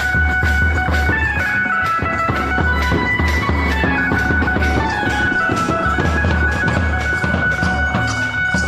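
Procession band music: large drums beating steadily under a sustained, wavering melody line.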